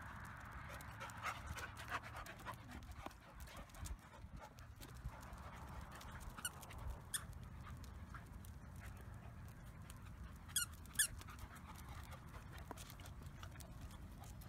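Two dogs playing together with short high-pitched squeaks a few times; the loudest two come close together about three-quarters of the way through.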